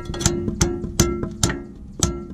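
Hammer striking steel in quick, irregular blows, about three a second, each leaving a short metallic ring. It is driving a headless guide bolt through the alternator mounting bracket to line up the bolt holes.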